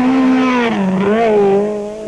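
Rally car engine running hard at high revs, the note dipping briefly about halfway through and then climbing again.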